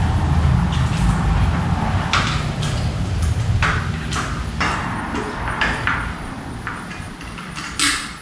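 Scattered sharp clicks and knocks of a yellow coaster-brake bicycle wheel being handled and seated in the frame's rear dropouts, over a low rumble that fades out by about six seconds in.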